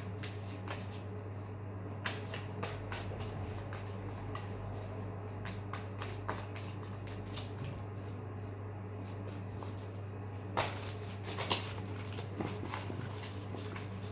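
Tarot cards being shuffled by hand: a steady run of light flicks and clicks, with a louder flurry about ten seconds in, over a steady low hum.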